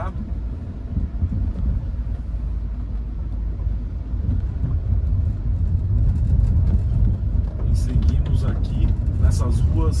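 Cabin noise inside a Hyundai HB20 driving over rough, broken asphalt: a steady low road and tyre rumble that grows louder in the second half, with short clicks and knocks from the cabin over the bumps.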